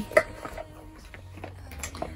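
Faint handling noise: small plastic bottles knocking together and a clear plastic toiletry bag rustling as it is sorted through, a few light ticks over a low steady hum.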